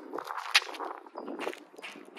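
Sneaker footsteps on asphalt and a basketball being dribbled during a run-up to a dunk. It is a run of sharp thuds and slaps, the loudest about half a second in.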